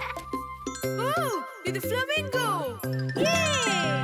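Children's cartoon song music with tinkling chimes over bouncy bass notes. From about a second in, voices glide up and down in long arching exclamations.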